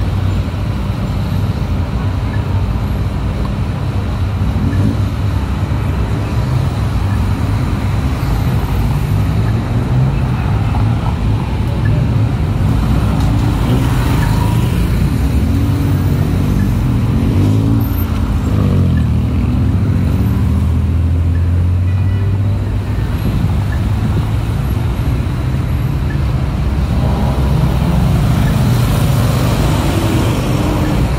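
Dense city road traffic: cars, taxis and motor scooters running and passing. The engines rise and fall in pitch as vehicles pull away about halfway through.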